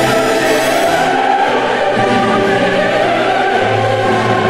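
Choral classical music: a choir singing long held notes.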